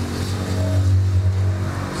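A steady low motor hum at a constant pitch, carrying on between phrases of speech.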